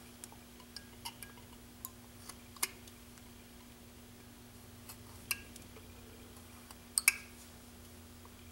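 Carving knife cutting small chips from a wooden figure, with a scattering of short, sharp ticks and snicks. The loudest come a little after two and a half seconds, at about five seconds, and as a pair near seven seconds.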